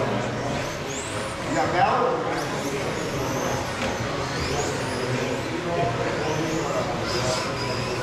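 Electric RC touring cars with 21.5-turn brushless motors running laps, their high motor whines rising and falling in pitch with throttle, over background chatter.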